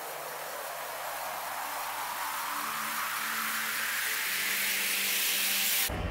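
Synthesized white-noise riser in the intro of a progressive psytrance track, sweeping upward in pitch and growing steadily louder over faint low sustained tones. It cuts off abruptly near the end as the bass and beat come in.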